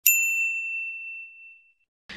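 A single bright bell-like ding, the sound effect for a YouTube subscribe tap, ringing out clearly and fading away over nearly two seconds.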